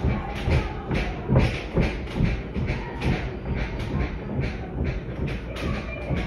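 Rhythmic thumping beat, about two to three thumps a second, standing in for the loud party music and stomping of neighbours in the apartment upstairs.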